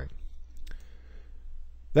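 A pause in the narration with a low steady hum, and a single faint click about two-thirds of a second in.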